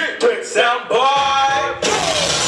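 A male voice singing through a stage microphone over a hip-hop track, ending its line on one long held note. Just before the end a sudden loud rush of noise takes over.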